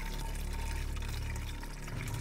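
Water running from a tap into a plastic bottle, filling it in a steady stream, over a low steady drone.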